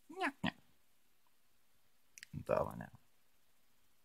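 Two short voiced sounds: a brief call that rises and falls in pitch at the start, then a lower, fuller one about two and a half seconds in, each preceded by a faint click.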